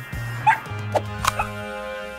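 Cartoon puppy giving several short yips over background music.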